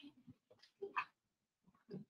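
Faint, scattered voices and movement of people milling about a room during a break. No single sound stands out.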